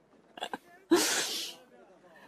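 A commentator's short breathy vocal burst close to the microphone: two brief voice sounds, then a sudden sharp rush of breath just before a second in that lasts about half a second.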